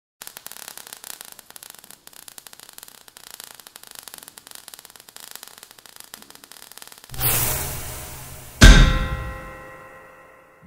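Sound effects for an animated logo: faint crackling for about seven seconds, then a rush of noise with a low boom that fades. A second and a half later comes a loud metallic clang that rings on with several steady tones as it dies away.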